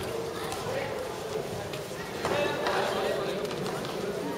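Indistinct voices of players and spectators talking and calling out at an outdoor handball court, growing louder about halfway through.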